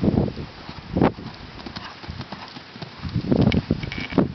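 Horse's hooves thudding on a sand arena at a canter, coming in uneven groups of dull beats.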